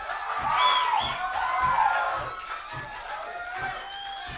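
Live electric blues band music, recorded in concert: a high lead line bending up and down in pitch in short phrases over light, even thumps from the rhythm section.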